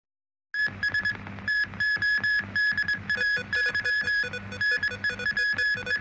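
Electronic TV news opening theme music, starting about half a second in: a quickly repeated high beeping note over a pulsing bass.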